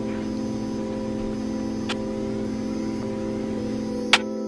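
Background music holding one steady chord over a low rumble, with a single short click about two seconds in.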